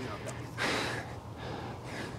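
A person's short, breathy exhale, like a gasp or a breath of laughter, a little over half a second in, over faint background hiss.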